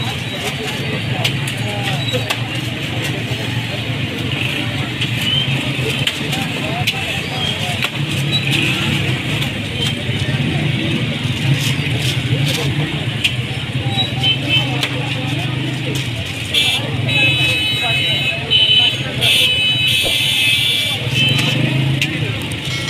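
Busy food-stall ambience: background voices over a steady low hum, with small clicks and rustles. A run of high-pitched tones comes in near the end.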